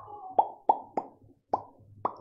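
Four short, hollow pops, each with a quick falling tone, irregularly spaced over about a second.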